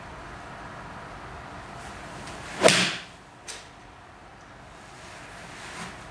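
A Mizuno JPX 800 Pro iron swung through and striking a golf ball off a hitting mat: one sharp swish-and-crack about two and a half seconds in, followed by a faint click under a second later.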